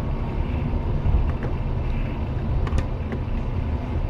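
Steady low road and engine rumble of a car driving in town, heard from inside the cabin, with a faint steady hum and a few light clicks.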